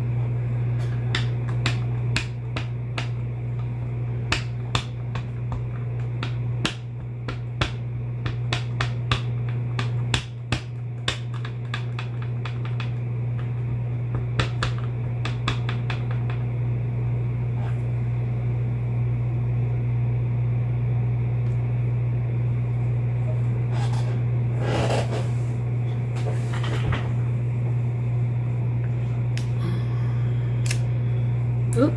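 Clear acrylic stamp block tapped again and again on ink pads while inking a leaf stamp: a run of light, quick clicks through the first half, then a few louder taps and scuffs as the stamp is pressed onto card stock. A steady low hum runs underneath.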